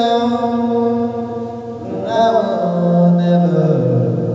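A young male voice singing into a handheld microphone, holding a long sustained note, then shifting to a lower held note about halfway through.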